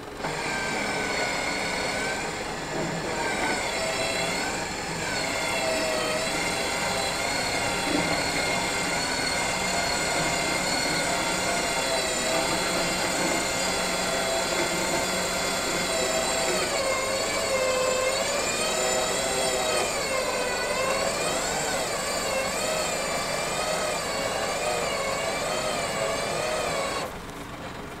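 Truck-mounted winch motor whining as it pulls a Smart car up loading ramps. Its pitch wavers up and down as the load shifts, and it stops about a second before the end.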